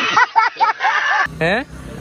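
A man laughing in short rhythmic bursts over a rushing noise, cut off abruptly just over a second in; then a steady low vehicle hum.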